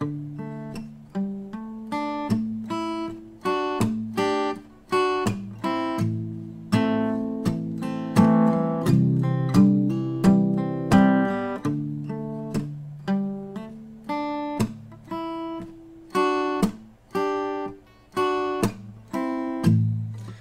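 Takamine TSF48C steel-string acoustic guitar played with a pick: a palm-muted, fingerpicked-style chord pattern with percussive muted hits, made by driving the picking hand into the strings as the pick strikes them.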